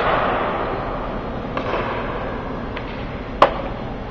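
Ice-rink practice noise: a steady hiss of skates and rink ambience with a few faint knocks, and one sharp crack from a hockey puck impact about three and a half seconds in.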